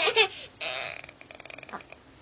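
A toddler's high-pitched babbling at the start, then a rough, breathy vocal sound, fading to faint clicks and handling noise near the end.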